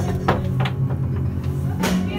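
A low, steady rumbling drone from an exhibit's ambient soundtrack, with short knocks a third of a second in, just past half a second, and near the end.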